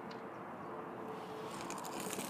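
Faint, steady background noise with a thin, steady hum and no distinct event.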